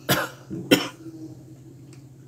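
A person coughing twice in short bursts, the second just over half a second after the first.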